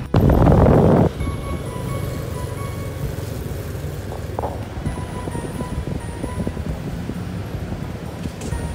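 Background music over steady outdoor background noise, opened by a loud rush of noise lasting about a second.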